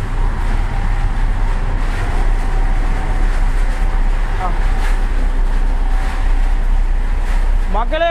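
Kapok (silk-cotton) cleaning machine running steadily, a loud mechanical drone with a low hum underneath.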